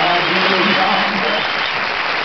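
Studio audience applauding steadily, with a man's voice talking over the applause for the first part.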